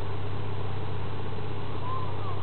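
A large diesel truck engine idling steadily, a low even hum. A short high whine rises and falls near the end.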